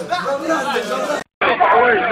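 Several men's voices talking over one another, with no words clear. A short break of dead silence comes a little over a second in, after which the talking goes on, sounding duller.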